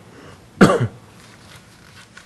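A man coughing once, a short single cough about half a second in, against quiet room tone.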